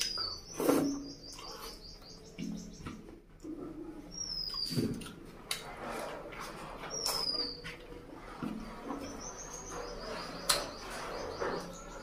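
Close-up wet eating sounds, chewing, lip smacks and clicks, as a mouthful of curry and rice is eaten by hand. Behind them a bird chirps: short falling whistled notes repeated every couple of seconds, and two quick runs of high chirps.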